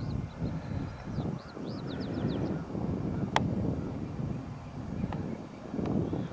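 Wind buffeting the microphone in open fields, an uneven low rumble, with a few faint high bird chirps about a second in and again near the end, and one sharp click a little past the middle.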